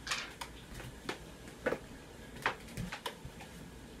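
A scattered run of light knocks and clicks, about seven in four seconds at an uneven pace, with no steady sound between them.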